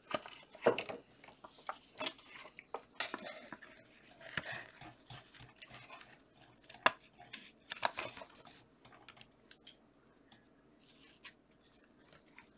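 Trading cards and plastic card sleeves being handled with gloved hands: scattered soft clicks, taps and rustles, thinning out over the last few seconds.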